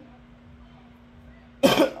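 A person clears their throat once, briefly and sharply, near the end, after a quiet pause holding only a faint steady hum.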